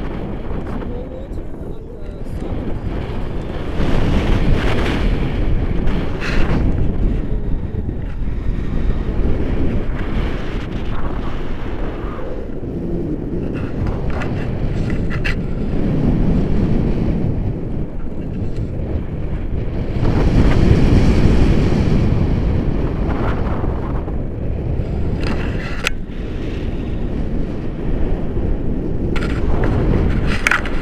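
Wind rushing over a handheld camera's microphone in tandem paraglider flight: a loud, steady low rumble that swells and eases every few seconds.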